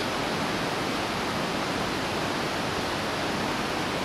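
Steady rush of flowing water, an even unbroken noise.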